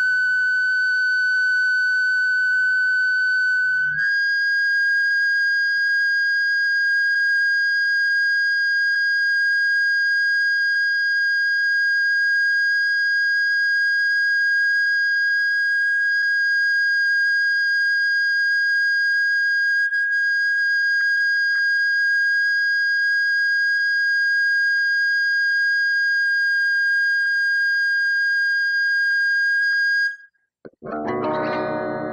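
Sustained electric guitar feedback: one steady high tone with overtones. It steps slightly higher in pitch about four seconds in, where a faint low hum underneath stops, and it cuts off abruptly at the very end.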